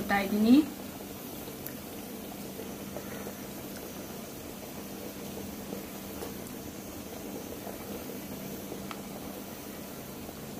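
Thick chicken paneer masala curry simmering in a cooking pot, a steady faint bubbling.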